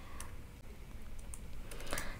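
A few faint keystrokes on a computer keyboard as characters are typed, spaced irregularly.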